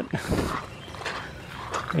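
Footsteps over the rocks and mud of a drained riverbed, a few short scuffs near the start, then faint and irregular.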